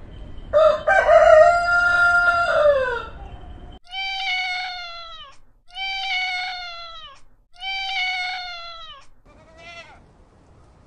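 A rooster crows once: a long call that holds its pitch and drops away at the end. Then a cat gives three long meows, each falling in pitch, and near the end comes a short rising call from another animal.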